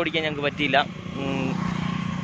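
A motor vehicle engine running steadily, with a low, even hum. A man's voice is speaking over it at the start.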